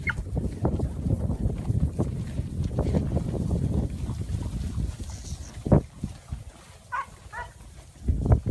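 Hooves of a running herd of yearling cattle on grass pasture, a dense low rumble of hoofbeats mixed with wind on the microphone. It thins out after about five seconds, with one louder thump just before six seconds in and a few short high chirps near the end.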